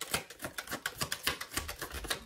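A deck of tarot cards being shuffled by hand: a rapid, even run of card clicks, about ten a second.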